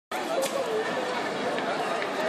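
Crowd chatter: many voices talking and calling over one another, with a sharp click about half a second in.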